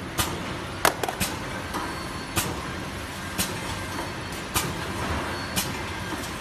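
BOPP cellophane overwrapping machine running steadily, with sharp clicks about once a second as it cycles through its wrapping strokes.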